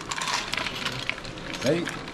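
Snails in their shells, ladled with broth from a pot into a small bowl, clicking and clattering against the bowl and each other, with a splash of liquid in the first half.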